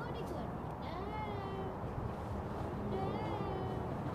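Puppies whining: two short, high, wavering whines, one about a second in and another near three seconds, over a steady low rumble.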